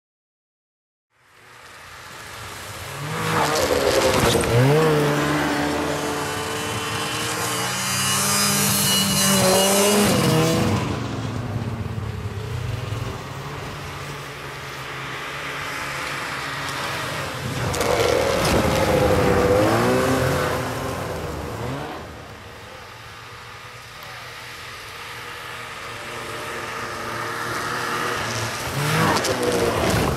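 Snowmobile engines revving as the sleds ride past, rising and falling in pitch about four times and loudest as they pass close.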